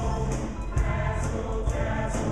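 High-school show choir singing in full chorus over a live band, with drums and bass keeping a steady beat.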